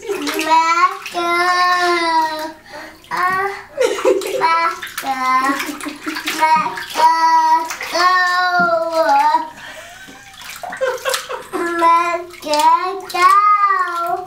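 A toddler singing in long held notes, with water splashing and sloshing in a bathtub.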